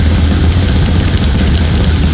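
Loud thrash metal song by a three-piece band playing at full speed: distorted electric guitar, bass and fast drumming.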